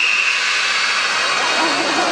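A whistle blast, one long steady high note, dies away in the first half second, giving way to a hissing wash of hall noise and then children's voices rising near the end.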